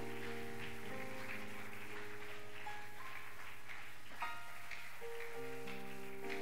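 Soft electronic keyboard playing sustained chords, each held for a second or two before moving to the next, with a few short higher notes about four seconds in.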